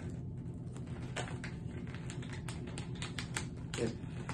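Plastic candy pouch crinkling as it is handled and pulled at its tear tab: irregular sharp crackles over a low steady hum.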